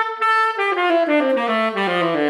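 Tenor saxophone played with a slightly tight embouchure: one held note, then a run of notes stepping steadily down in pitch.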